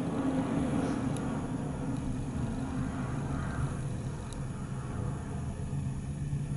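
A steady low background rumble with no speech.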